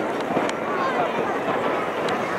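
Busy beach hubbub: many overlapping voices of bathers at a distance, no single clear speaker, over the sloshing of shallow sea water close by.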